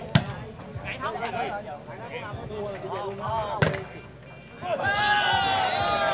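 Sharp slaps of a volleyball being hit, one near the start and a second, harder one about three and a half seconds in, over spectators' chatter. A long drawn-out shout with falling pitch follows about a second after the second hit.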